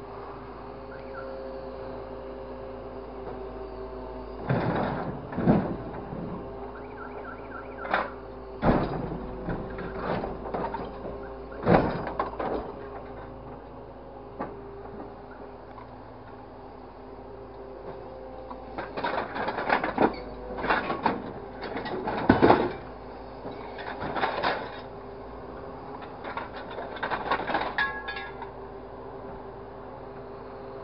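Scrap grab truck's hydraulic crane running with a steady hum and whine while its orange-peel grapple handles scrap metal in a steel bin: repeated bursts of loud metal clattering and crashing, in two spells, about four to twelve seconds in and about nineteen to twenty-eight seconds in.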